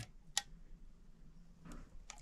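A single short, sharp click from a steel tape measure's hook against a pocketknife blade as it is set in place to measure the blade, with quiet room tone around it.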